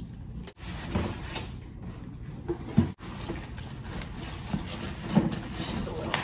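Cardboard box being opened and unpacked: cardboard flaps and packing tape scraping, plastic and styrofoam packing rustling and knocking, with irregular thumps and two abrupt breaks.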